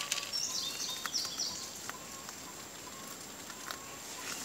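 Rabbits chewing fresh leaves and stems, a scatter of small crisp crunching clicks. A bird chirps briefly in the first second and a half.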